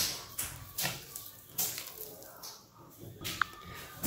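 A hand squeezing and mixing a soft butter-and-sugar dough in a glass bowl: squishing, scraping strokes about once a second, with a short high squeak near the end.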